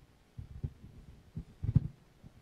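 Low thumps and bumps of handling noise as a microphone at the lectern is moved and adjusted. The loudest cluster comes near the end.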